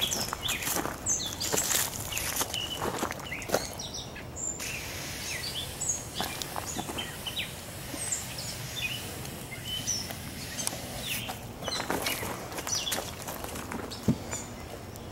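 Short hisses of an aerosol can of insect repellent sprayed onto a shirt, mixed with cloth rustling and handling noise, while small birds chirp.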